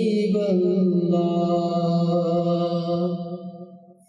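A man's voice singing an unaccompanied Islamic naat in a slow, chant-like style. He holds long notes that bend gently in pitch over a steady low drone. The singing fades away near the end.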